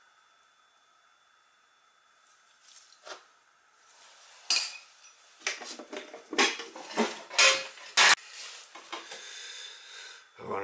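Small metal burner parts and tools clinking and clattering as they are handled and picked through. A string of sharp knocks starts about halfway through.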